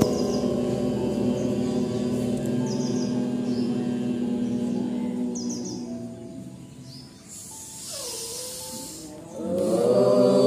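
Meditative drone music of several long-held steady tones that fades away between about six and seven seconds in. Chanting swells in just before the end.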